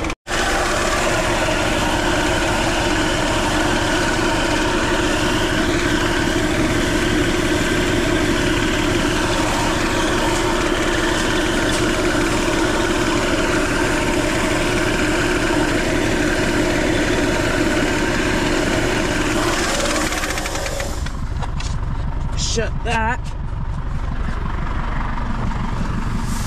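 Air-cooled diesel tractor engine (Deutz D6006) idling steadily while oat seed pours into the spreader hopper with a dense rushing hiss. Near the end the pour stops and the sound drops away, leaving the quieter engine.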